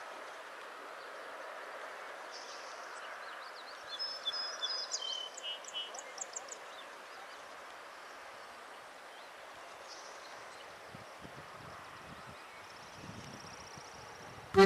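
A songbird calling in a quick run of high chirps for a couple of seconds, starting about four seconds in, over a steady faint outdoor hiss. Fainter high bird notes come again later, along with a few soft low bumps near the end.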